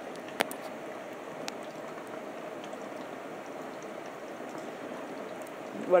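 Steady hiss with a faint hum, and a single sharp click about half a second in.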